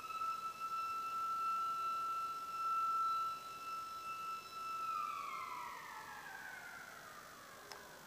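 A siren sounding one steady tone, then sliding slowly down in pitch from about five seconds in as it winds down.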